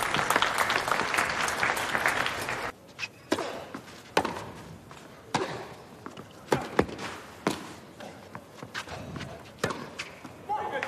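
Crowd applause for a little under three seconds, cut off abruptly. Then a tennis rally on a clay court: sharp racket strikes on the ball about once a second, over a quiet crowd.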